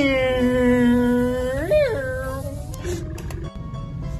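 A person's drawn-out vocal cry over background music: the pitch slides down and holds for about a second and a half, then swoops sharply up and back down just under two seconds in.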